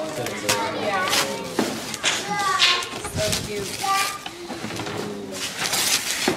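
Adults and children chattering at once, with no clear words. There are brief rustling noises as gift wrap and tissue paper are handled.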